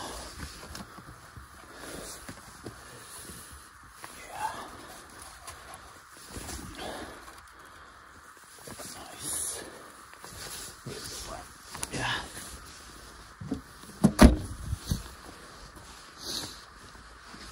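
Bags and gear being shifted around inside a car's cabin, with scattered rustles and light knocks. About fourteen seconds in, a car door slams shut with a sharp, loud thud.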